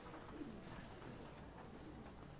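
Congregation sitting down in wooden church pews: faint shuffling, soft creaks and a few low voices.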